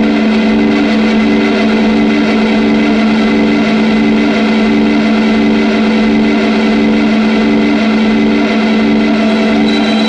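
Electric guitar played through the Southampton Pedals Indie Dream's overdrive, delay and reverb: a loud, dense chord held and sustained, with one note pulsing about one and a half times a second among the repeats and reverb wash.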